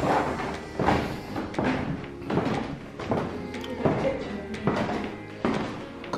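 Footsteps thudding on a wooden staircase, about one step every three-quarters of a second, over background music.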